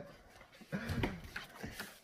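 Faint shuffling and a few light knocks as a heavy wooden beehive box is carried through a doorway, starting a little under a second in.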